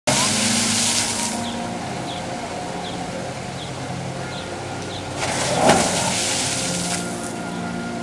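Rockwork wave fountain surging, its water rushing and splashing over the rocks at the start and again a little past halfway, over a faint steady tone.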